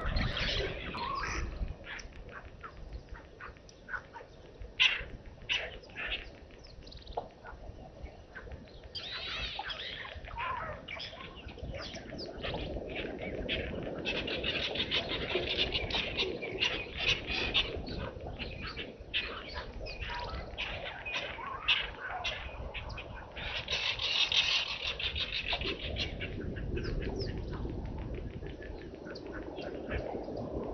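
Wild birds chirping and calling, with many short chirps scattered through and two stretches of dense, rapid chirping, one in the middle and one near the end.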